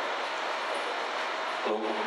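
Steady hiss of room noise, with a brief voice sound near the end.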